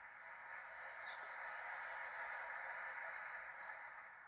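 Audience applause heard through a television speaker, thin and faint, swelling in the middle and fading away toward the end.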